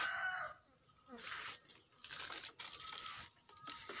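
A rooster crowing, its call ending about half a second in, followed by several irregular bursts of rustling and crinkling.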